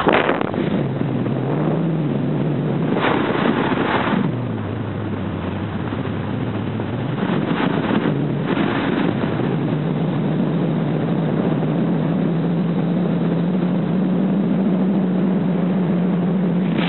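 Car engine and road noise heard from inside the moving car. The engine note drops about four seconds in, then rises and holds steady, with two short louder rushes of noise, one just before the drop and one about eight seconds in.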